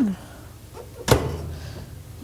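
A single sharp knock about a second in, as the countertop cover over a motorhome's three-burner gas stove is handled.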